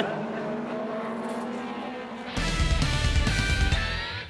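Steady racing engine noise from the track. About two and a half seconds in, a louder music sting with heavy bass comes in, mixed with car sounds.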